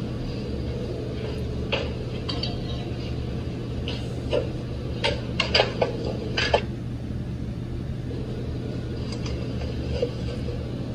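A few sharp knocks and clatters, most of them bunched about four to six and a half seconds in, over a steady low hum.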